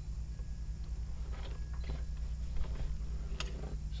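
Faint, scattered scrapes and taps as a long-handled mop is pushed along the top of an RV slide-out under its topper, over a steady low hum.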